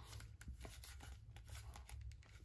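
Near silence with faint handling sounds: a few soft, scattered clicks and rustles as an axe head with a leather collar is moved about by hand, over a low hum.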